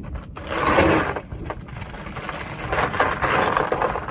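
Scraping and clicking handling noise close to the microphone, in two stretches of about a second each.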